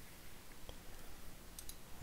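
A few faint computer mouse and keyboard clicks over low room hiss: one about a third of the way in and a quick pair near the end.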